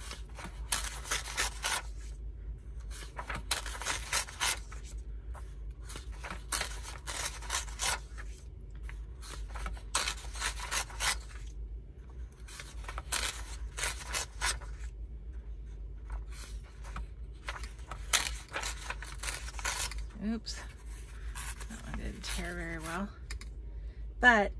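Pages being torn out of a hardback book near the spine, in many short crackling rips and paper rustles. A short stub of each page is left in so the spine stays intact.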